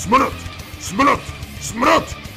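Short yelping cries that rise and fall in pitch, repeating at a steady pace of about one every 0.8 s, over background music.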